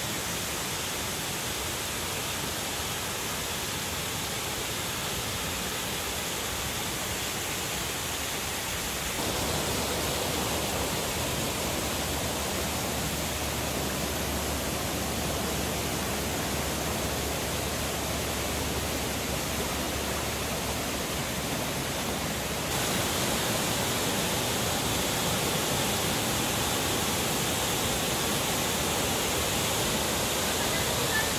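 Steady rushing of waterfalls pouring into a lake. The sound changes abruptly and gets a little louder about a third of the way in and again about three-quarters of the way through.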